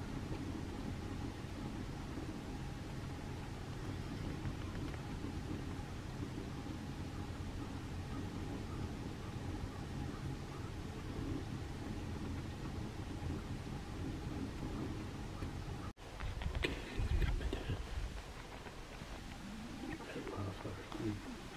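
Steady low rumble of outdoor background noise with a faint thin hum above it. A cut about 16 s in breaks it, and after that the rumble is louder and uneven.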